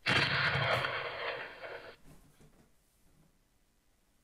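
A loud burst of rushing noise that lasts about two seconds and cuts off abruptly, leaving a faint tail.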